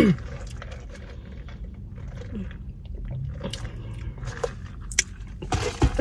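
A throat clear, then faint mouth sounds of sipping an iced drink through a straw, swallowing and chewing, with scattered small clicks over a low steady hum.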